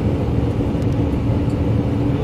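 Steady running noise heard inside the driver's cab of an SRT high-speed train (a KTX-Sancheon type trainset) travelling at speed: a constant rumble with a faint steady hum over it.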